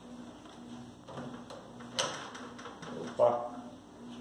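Countertop electric oven door being pulled open, with one sharp click about halfway through as it unlatches.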